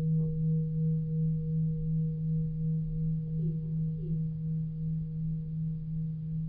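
A sustained low ringing tone: a steady hum with a fainter higher overtone, wavering gently in loudness and slowly fading.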